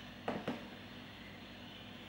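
Two brief clicks close together, a third and half a second in, from handling a small clip-on lavalier microphone, over a faint steady room hum.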